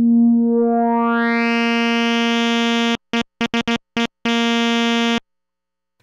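Moog Subsequent 25 analog synthesizer holding one steady note that grows steadily brighter over about two seconds as its filter knob is turned up. It is followed by a handful of short stabs of the same note and a held note that cuts off suddenly about a second before the end.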